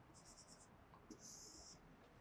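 Faint strokes of a marker pen writing digits on a whiteboard, in two short scratchy runs.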